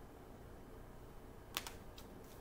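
Two quick, sharp clicks close together about one and a half seconds in, then a softer one, as a deck of oracle cards is handled, over a faint low room hum.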